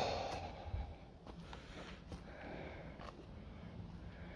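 A short breathy exhale close to the microphone at the start, then low-level quiet with a few faint scattered steps on loose rubble.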